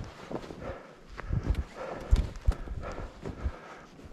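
Footsteps crunching in snow on a snowy woodland trail, a walking rhythm of about two or three steps a second.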